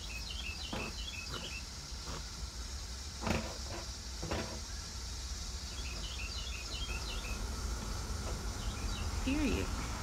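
Outdoor background: birds chirping in short clusters of high twitters over a steady hiss and low rumble, with a few soft knocks in the first half. A short hummed note from a woman's voice near the end.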